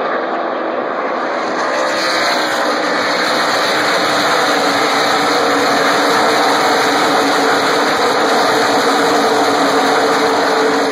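A pack of NASCAR Sprint Cup stock cars' V8 engines running at racing speed as the field passes. The sound swells about two seconds in and stays loud as the cars go by.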